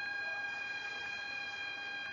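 A steady, high whistling tone with several overtones, held at one pitch.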